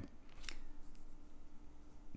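Soft rustle of hands sliding over and smoothing down the paper pages of a thick catalog just opened to a new spread, with a brief tick about half a second in.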